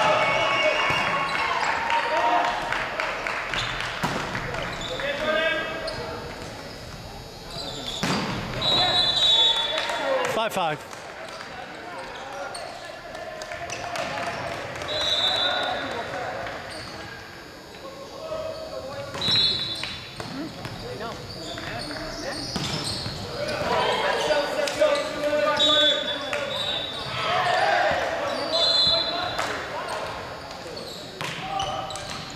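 Indoor volleyball play in a large gym: the ball being struck and bouncing on the wooden floor a few times, amid players' shouted calls, all echoing in the hall.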